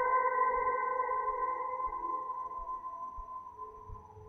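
A single sustained electric guitar note, washed in reverb and delay, dying away steadily; its higher overtones fade out about halfway through, and the tone is faint by the end.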